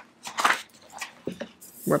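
A few short, soft rustles of paper as workbook pages are handled, with a higher hiss just before a voice comes back in near the end.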